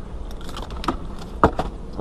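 Light crinkling and small clicks of a sealed baseball card pack's wrapper being handled, with one sharper click about one and a half seconds in.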